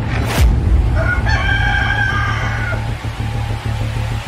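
A rooster crowing once, one call of a little under two seconds, over electronic background music with a steady bass. A short whoosh sweeps through just before the crow.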